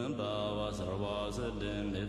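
Quiet background music of a low, slowly chanted mantra, its notes held long and steady.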